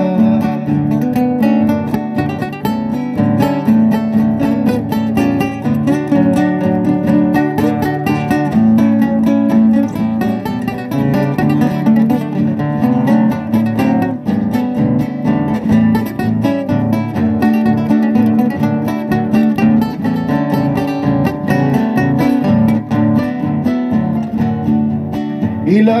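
Three acoustic guitars playing an instrumental break in a chamamé, strummed and plucked in a steady, lively rhythm.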